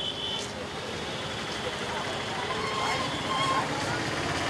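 Outdoor fair ambience: indistinct voices of people mixed with a steady background rumble of traffic, with a thin high tone that stops about half a second in.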